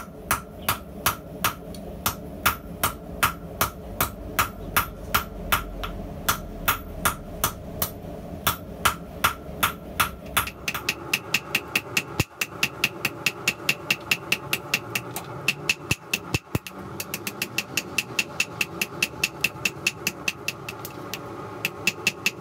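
Hand hammer striking red-hot YK-30 tool steel on an anvil in a steady rhythm to draw out the bar. The blows come about two to three a second, then quicken to about three or four a second around halfway through. A steady hum runs underneath.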